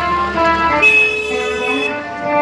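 A motorcycle horn sounds once, beginning a little under a second in and holding steady for about a second before cutting off, over background music.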